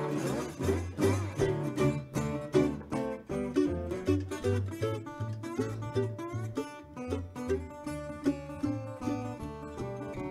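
Metal-bodied resonator guitar fingerpicked solo: a regular thumbed bass line under a picked melody, an instrumental break standing in for a forgotten verse of the blues song.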